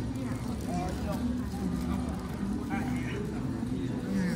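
Indistinct chatter of several visitors, children's voices among them, over a steady low hum.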